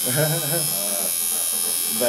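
Electric tattoo machine buzzing steadily as it runs.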